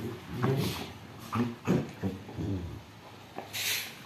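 A Rottweiler and a Labrador puppy play-fighting, with short, low growls in several bursts over the first three seconds and a brief hiss near the end.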